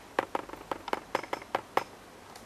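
A rapid, irregular run of about a dozen sharp clicks from a computer mouse as files are selected and dragged, the loudest right at the start.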